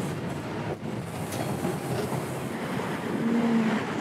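Toronto TTC subway train running, heard from inside the car: a steady rumble of wheels on track and the car's running noise. A short steady tone sounds about three seconds in.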